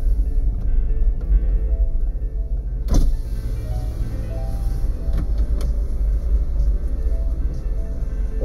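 Low, steady rumble of a car cabin with the engine idling, under quiet background music with short held notes; a single sharp knock about three seconds in.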